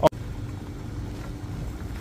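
Wind buffeting the microphone, a steady low rumble, with a faint steady hum under it; it comes in right after an abrupt cut at the very start.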